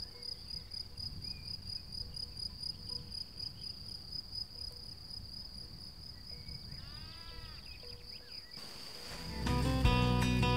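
Crickets chirping steadily in an even, fast pulse, with a brief other call about seven seconds in. Background guitar music comes in near the end.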